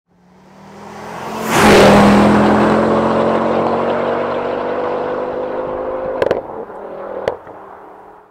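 A car engine sound effect in a logo intro: it swells up to a sharp rush about one and a half seconds in, then runs on steadily and slowly fades. Two sharp clicks come near the end.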